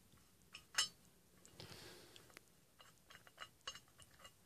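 Faint metallic clicks and light scraping as the screw-on metal butt cap of a Rambo First Blood replica knife's hollow handle is unscrewed, with one sharper click about a second in and a few small ticks near the end.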